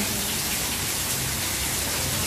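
Steady, even hiss with no voice in it: the background noise of the recording.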